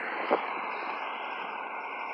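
Steady noise of cars driving past on a street, with one short knock about a third of a second in.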